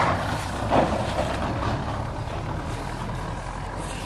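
A steady low motor hum, like a vehicle engine running nearby, with soft rustling of eggplant leaves brushing against the camcorder as it moves through the plants.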